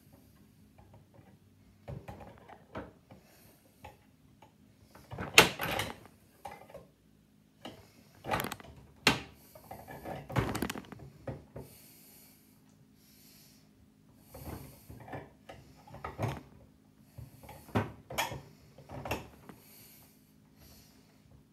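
Handling noise from a replica lightsaber hilt being worked by hand: scattered clicks and knocks, the loudest a little over five seconds in and again about nine seconds in.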